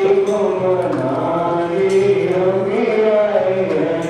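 Hindu devotional chanting: voices sing long, slowly gliding notes together, with a few jingling percussion strikes.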